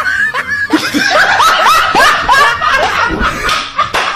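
A person laughing hard in a rapid run of high-pitched laughs, with a few sharp smacks near the end.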